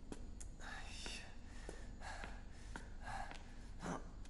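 A person whispering softly in short, breathy phrases.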